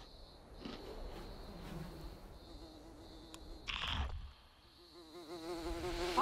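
Faint insect buzzing: a fly buzzing with a wavering pitch over a steady high insect drone. A short rush of noise about four seconds in.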